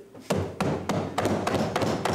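Members thumping their wooden desks in a quick, uneven run of knocks, the chamber's way of applauding a point made in debate.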